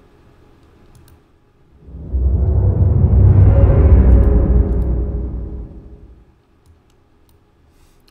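Intro logo sound effect: a deep rumbling whoosh that swells up about two seconds in, peaks midway and fades away by about six seconds in. A few faint clicks come before it.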